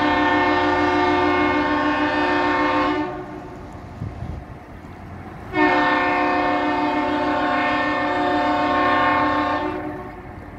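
Ship's horn of the Great Lakes freighter James R. Barker sounding two long blasts, each a chord of several steady tones: the first is already sounding and ends about three seconds in, and the second starts a couple of seconds later and holds for about four seconds.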